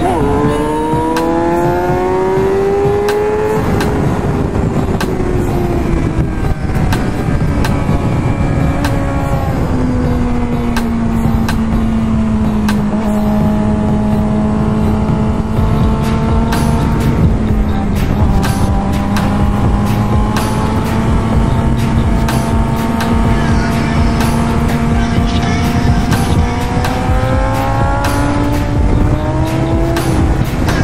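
2006 Suzuki GSX-R inline-four with a Yoshimura exhaust, heard from onboard. The revs climb, drop back, then hold a nearly steady, slowly sagging pitch for a long stretch before climbing again near the end, under constant wind rush.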